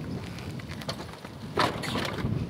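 Wind buffeting the microphone as a steady rush, with one short, sharp sound about a second and a half in.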